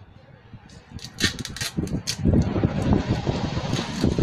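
A few sharp rustles about a second in, then a steady low rumble of wind buffeting the microphone from about halfway through.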